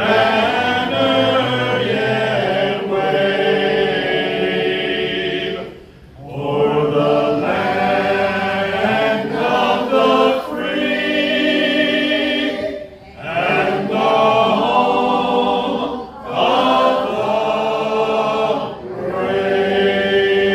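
Men's vocal group singing unaccompanied in close harmony through a PA, long held chords in phrases with brief pauses for breath between them.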